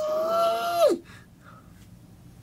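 A man's high-pitched, falsetto squeal that rises and is then held steady for about a second before cutting off, followed by faint room tone.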